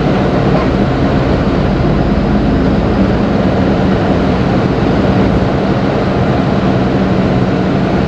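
Inside the cab of a Mercedes-Benz Atego truck on the move: a steady diesel engine drone with a constant low hum, mixed with road and tyre noise.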